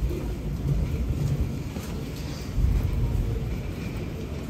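Low, steady rumble of subway station ambience, swelling briefly a little after halfway, with people's footsteps along the passage.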